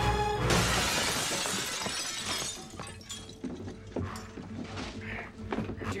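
A sudden crash of shattering glass and breaking debris from a TV drama soundtrack, starting with a few quick sharp knocks and dying away over a couple of seconds, with score music underneath.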